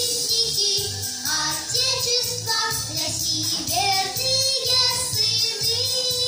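A children's vocal group of girls singing a pop song in unison over backing music with a steady beat.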